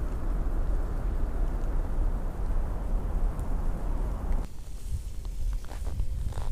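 Wind buffeting the camera's microphone outdoors: a steady low rumble that cuts off suddenly about four and a half seconds in, leaving a few faint clicks.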